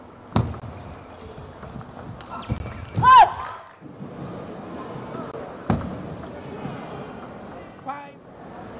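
Table tennis ball knocks during a rally: a sharp knock just after the start, then a few quicker knocks. About three seconds in, a short high shout rises and falls as the point is won. A single sharp knock follows a few seconds later.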